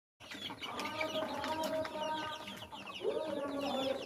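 A flock of chicks peeping constantly, a dense chatter of short, falling chirps. A longer, lower drawn-out call from an adult bird starts about three quarters of the way through.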